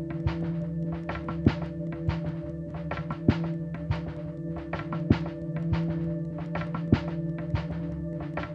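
Live ambient electronic music: a sustained drone of steady held tones, with a deep thump about every two seconds (four in all) and quick clicking ticks scattered between the thumps.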